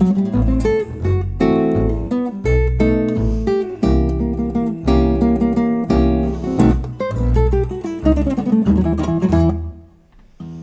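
Classical guitar and double bass playing together: guitar melody and chords over sustained low bass notes. Near the end a descending run leads into a brief drop-off in the music.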